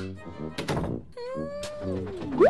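A few sharp knocks in the first second, over background music with a low held chord; from about halfway in, a pitched tone slides slowly downward.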